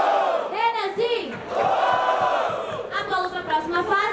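A crowd shouting together in two long, drawn-out yells, followed by a voice speaking near the end.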